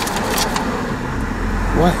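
Steady low hum of a stationary car with its engine idling, heard from inside the cabin, with a deeper rumble coming up about a second in.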